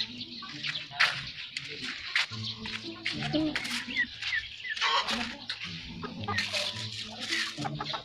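Chickens clucking in a backyard poultry yard, with a few short high chirps about four seconds in.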